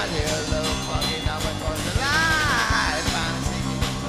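Live rock band playing: a drum kit keeping a steady beat under electric guitar and bass guitar, with a high, bending melody line about halfway through.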